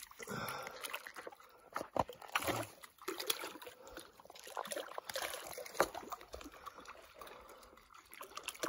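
Shallow water lapping and trickling among shoreline rocks, with small irregular splashes and ticks as a caught trout is held in the shallows.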